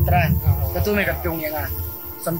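A man speaking in Khasi, over soft background music.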